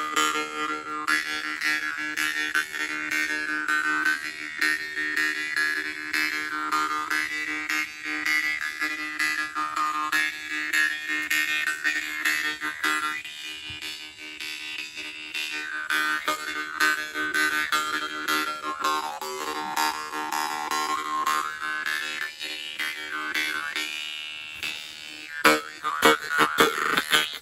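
Deep baritone Russian vargan (jaw harp), a Dimitri Glazyrin "Alpha", played with a steady low drone while its overtones glide up and down as the player's mouth shapes them; the plucking strokes come thick and fast near the end.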